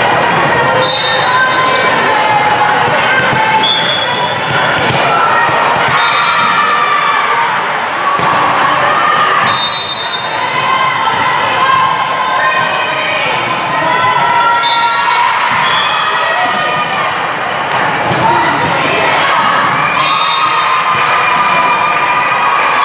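Indoor volleyball in a large sports hall: a steady din of many players' and spectators' voices calling and shouting, echoing off the hall, with sharp slaps of the ball being hit and bouncing on the court.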